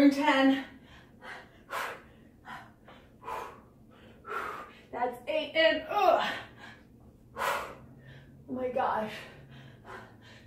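A woman breathing hard in sharp, forceful puffs, about one a second, from the effort of swinging a kettlebell. Short bits of voice break in near the start, around five seconds in and again near nine seconds.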